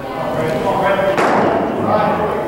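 Indistinct voices echoing in a large indoor hall, with a single sharp thud a little over a second in.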